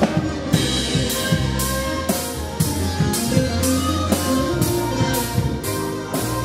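Live band playing an instrumental passage: a drum kit keeps a steady beat of about two strokes a second, under a bass guitar line and a melody, with no singing.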